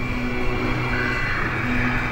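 A film soundtrack playing over loudspeakers into a room: music with low held notes over a steady rumble.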